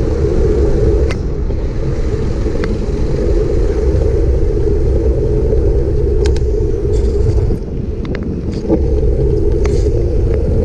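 Wind rumbling on the microphone of a camera mounted on a moving bicycle, with the tyres' rolling noise on asphalt and a few light clicks scattered through.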